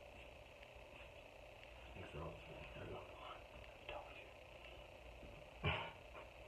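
Quiet small-room tone with a steady low hum and a few faint murmured words. A short burst of laughter comes near the end.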